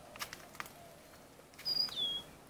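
A bird calls near the end: a clear, high whistled note that steps down to a lower one. A few faint clicks come before it.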